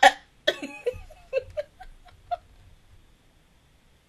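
A woman's voice trailing off: a string of short, soft vocal sounds that grow fainter and stop about two and a half seconds in, then near silence.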